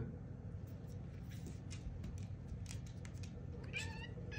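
A domestic tabby-and-white cat giving a short rising meow near the end, after a few faint light ticks.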